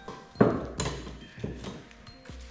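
Hard knocks and clacks of steel F-clamps being set and tightened onto a glued-up wooden board. The loudest knock is about half a second in, with a few lighter ones after.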